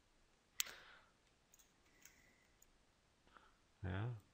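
A computer mouse button clicking once, sharply, about half a second in, then a few faint ticks from the mouse while the 3D model is dragged around; otherwise near silence.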